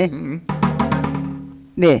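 Janggu (Korean hourglass drum) playing the closing strokes of a noraetgarak accompaniment, the last stroke fading out over about a second. The singer's final wavering note ends early on.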